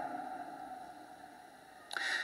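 A pause in a man's spoken sermon: the last words fade slowly into faint room tone with a thin steady hum. A quick intake of breath comes near the end, just before he speaks again.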